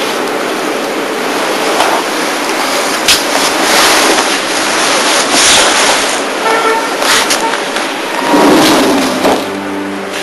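Street traffic noise, a steady rush of passing cars, with car horns sounding briefly in the second half.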